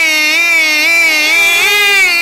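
A single voice holding one long sung note, with a slight waver and a small rise in pitch past the middle.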